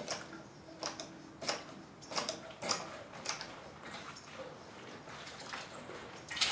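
Guzzler hand-operated rubber-bellows bilge pump being stroked to prime it, with a short click at each stroke, roughly two a second, growing fainter after about three seconds.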